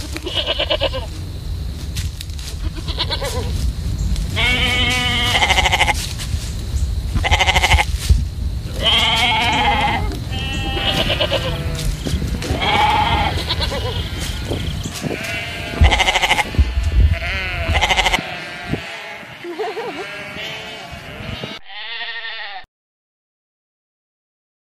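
A flock of sheep bleating: many separate wavering bleats from different animals, some overlapping, over a steady low rumble for most of the stretch. The last bleat comes near the end and cuts off abruptly.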